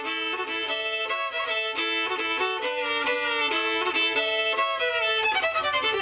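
Solo violin, bowed, playing a quick melody with the notes changing several times a second and two strings sometimes sounding together.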